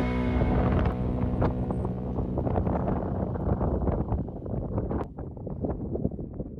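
Background music ending about half a second in, followed by wind buffeting the microphone in irregular gusts, which drop away near the end.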